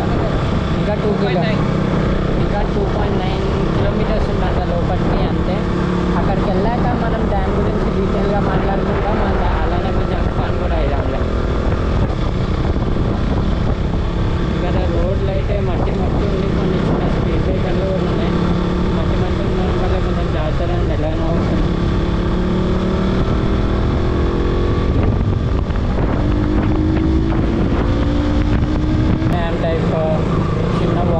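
Sport motorcycle's engine running as it is ridden, heard with wind on the microphone. The engine pitch rises over the last few seconds as it speeds up.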